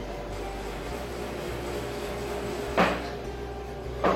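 Steady background hum with faint music, and a single sharp knock near the end.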